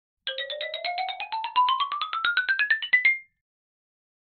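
Short electronic jingle: a quick run of short notes, about nine a second, climbing steadily in pitch and ending on a briefly held high note about three seconds in.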